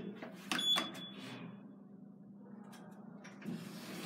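Lift car floor button pressed: a click with a short high beep about half a second in, followed by a low steady hum inside the car and a soft rush of noise building near the end.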